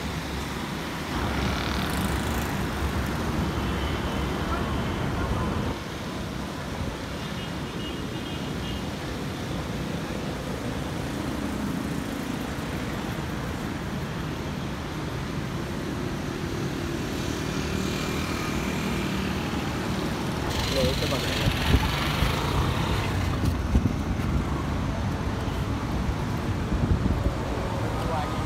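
Road traffic noise, a steady rumble of cars on the road, with indistinct voices in the background; it swells for a couple of seconds about three-quarters of the way in.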